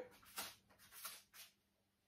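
Near silence: room tone, with three faint, brief sounds in the first second and a half.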